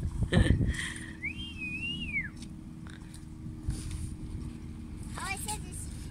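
A single whistled note about a second long that rises, wavers at the top and then slides down, heard over a low steady background rumble.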